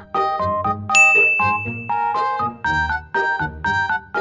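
Background music: a bouncy melody of short, evenly spaced plucked notes over a bass line, with a bright bell-like ding about a second in that rings on for about a second.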